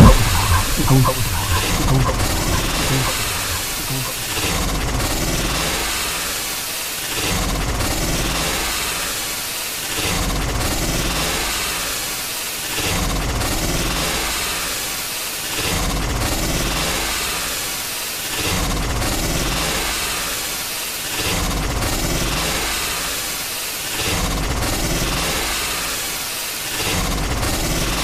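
Closing loop of an industrial noise track: machine-like harsh noise over a low rumble, swelling and fading in a steady cycle about every two and a half seconds, after the louder section breaks off.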